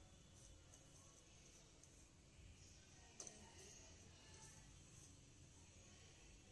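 Near silence: faint rustling of a hand mixing dry flour in a steel plate, with a soft click about three seconds in.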